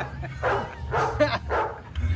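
About three short, breathy bursts of men's voices in quick succession.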